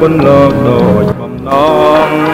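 A man singing a Khmer song over band accompaniment, with a short gap in the voice just past a second in.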